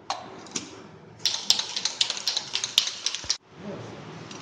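Aerosol can of penetrant-testing developer being shaken, its mixing ball rattling in a quick run of sharp clicks for about two seconds, then stopping abruptly. A couple of single clicks come just before.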